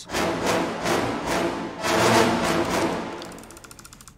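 Playback of an orchestral action-music cue: short, punchy orchestral stabs repeating in an even, quick rhythm over a low sustained chord, swelling again about two seconds in and fading out near the end.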